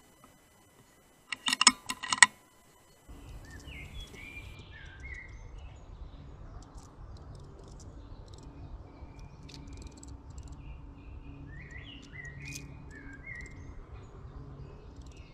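A quick cluster of loud, sharp clicks and knocks between about one and two seconds in. From about three seconds on come woodland ambience, with songbirds chirping now and then over a low, steady rumble of wind.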